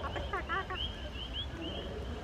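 Chorus of coquí frogs calling, many short rising chirps overlapping and repeating, over a steady low rumble.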